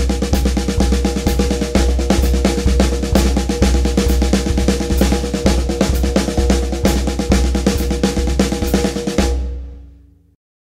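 Drum kit played with sticks: continuous rapid sixteenth notes moved around the snare and tom-toms in a single-plus-double sticking (right, left, left), with a paradiddle added to shift the pattern to the other hand, over a steady bass drum pulse. The playing stops a little after nine seconds and the drums ring out.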